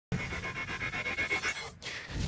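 Electronic intro sting for a TV show's logo animation: a rapid, even pulsing with a steady high tone running through it, fading out shortly before the end.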